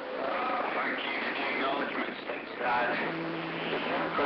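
A distant station's voice coming in faintly through a CB radio on AM, under a steady hiss of static: a long-distance skip contact that is hard to make out. A low steady hum joins about two-thirds of the way in.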